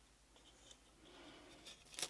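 Near silence with faint handling noise: hands turning and gripping a steel-shafted hammer with a wooden handle, a soft rustle and a sharper click near the end.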